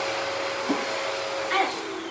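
Steady rushing noise with a faint level hum, like a household appliance motor running. A brief vocal sound comes near the end.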